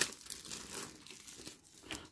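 Clear plastic film crinkling as it is pulled off a DVD/Blu-ray mediabook case. It is loudest in a sharp burst at the start and fades to a soft rustle after about a second.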